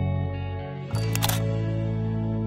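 Background music of sustained, gentle tones, with a camera shutter clicking about a second in as the chord changes.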